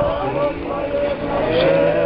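Crowd of pilgrims in a walking procession singing an Orthodox chant together, long held notes in short phrases.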